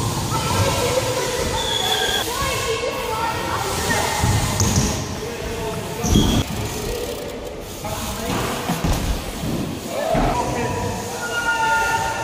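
Indistinct voices echoing in a large indoor skate park hall, with a few thuds from BMX tyres landing on the ramps.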